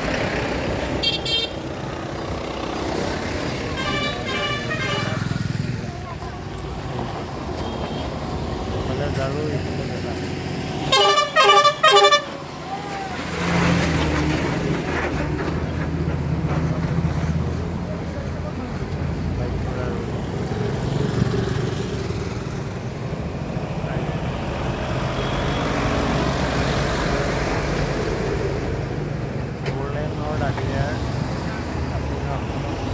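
Busy road traffic: engines running as cars and trucks pass close by, with vehicle horns honking several times. The loudest is a quick run of three or four short horn blasts about eleven seconds in. A heavier engine rumble follows.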